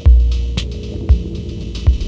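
Electronic music track: a very deep bass note lands at the start and slowly fades, under sparse, unevenly spaced percussion hits and a held mid-pitched tone.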